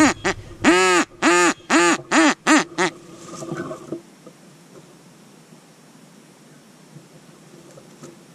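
A duck quacking in a quick series of short quacks, with one longer quack about a second in. The quacks grow quieter and stop about three seconds in, leaving only faint background.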